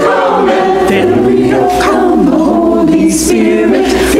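A mixed church choir of men and women singing together, many voices blending in sustained sung lines.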